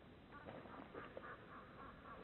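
A bird calling faintly in a quick run of short notes.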